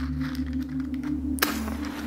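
A wooden match struck on its matchbox about one and a half seconds in: a sharp scrape and a brief hiss as it flares. A steady low drone of background music runs underneath.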